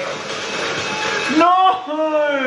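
A man's drawn-out, anguished groan of dismay, starting about one and a half seconds in, over a steady rushing noise.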